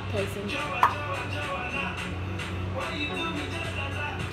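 Green slime being stretched and squeezed by hand, making soft clicks, with one sharper click a little under a second in, over background music with a steady low beat.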